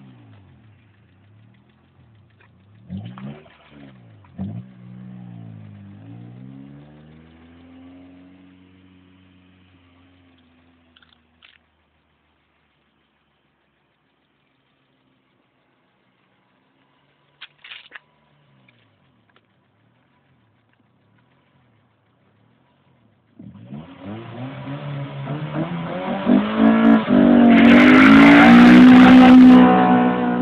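Honda Civic Si engine revved in a few short blips, then its pitch falls away and fades out. After a long quiet stretch the engine suddenly revs hard and climbs to a sustained high rev for a burnout, loudest near the end.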